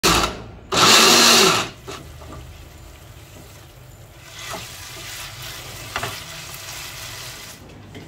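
Countertop blender run in two pulses, a split-second one and then one of about a second, grinding a chili and shallot spice paste. After that, quieter stir-frying in a pan, with a few sharp spatula clicks.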